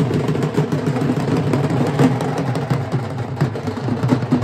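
Several dhol drums being beaten in a fast, continuous rhythm, with the noise of a large crowd underneath.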